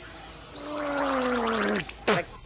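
A man gargling a mouthful of water to clear his throat: one long gargle that falls slowly in pitch, ending as he spits the water out.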